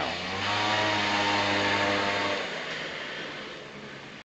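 Honda Giorno scooter passing at speed: a steady engine note that dies away about halfway through as it goes past.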